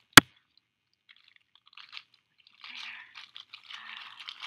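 A single sharp, loud click just after the start, then, from about two seconds in, clear plastic packaging crinkling and rustling as it is handled.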